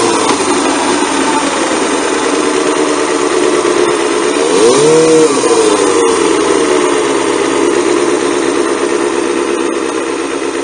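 1990 Kawasaki ZXR250's 250 cc inline-four, through an aftermarket exhaust, running at low revs as the bike rolls slowly. About five seconds in, a short throttle blip rises and falls in pitch, then the engine settles back to a steady low note.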